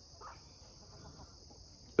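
Steady chorus of crickets, a continuous high-pitched hum with no break.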